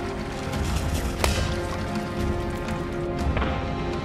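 Background music with sustained tones, cut by one sharp crack about a second in: a small scrap-metal cannon, charged with a firecracker, firing a paper-wadded BB pellet.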